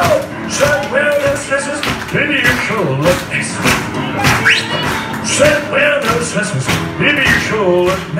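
Live upright piano playing an upbeat, rock-and-roll style tune, with a voice singing along.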